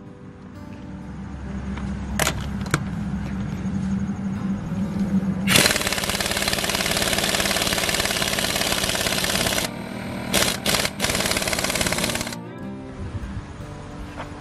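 Air impact wrench, run off a pancake air compressor, hammering on a truck's lug nut in one loud rattle of about four seconds, then a few short bursts. A steady hum runs before and after the rattle.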